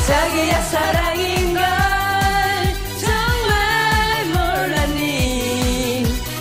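Upbeat pop song: sung melody with long held notes over a steady kick-drum dance beat.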